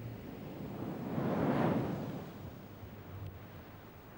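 Surf on the beach: a wave breaking and washing in, swelling about a second in and then fading away.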